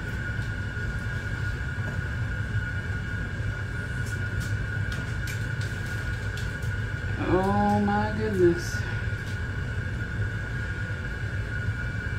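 A metal pie server cutting under a slice of pie and lifting it out of the dish, giving a few faint clicks and scrapes over a steady low hum. About seven seconds in, a brief hummed voice sound lasts about a second.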